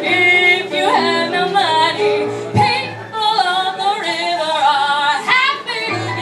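A woman singing live with piano accompaniment, her voice sliding up and down between notes over a low held piano note. Both break off briefly about halfway through.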